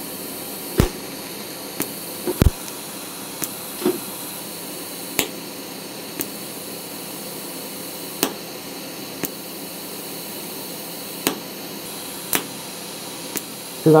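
Steady hiss from a TIG welder set to spot/stitch mode, with about a dozen sharp clicks spread through it, several of them about three seconds apart.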